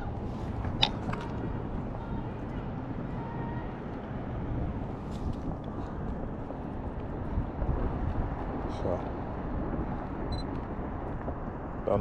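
Steady hum of road traffic with a single sharp click about a second in. A person yelling in the distance comes through faintly late on.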